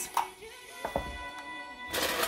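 Background music with steady held tones, over a few sharp clinks of ice cubes dropped by hand into a stainless steel cocktail shaker.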